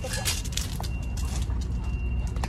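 A dog's claws clicking and scuffing on a concrete kennel floor as it dashes off after a thrown rope toy, with most of the clicks early on. A steady low rumble runs underneath.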